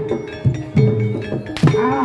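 Javanese gamelan music for a jaranan trance dance: repeated hand-drum strokes that drop in pitch, over a held ringing metallic tone.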